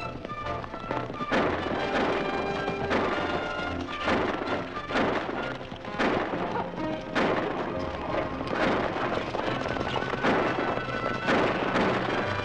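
Dramatic orchestral film-score music, punctuated by about ten sharp cracks roughly a second apart.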